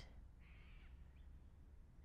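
Near silence with one faint bird call about half a second in.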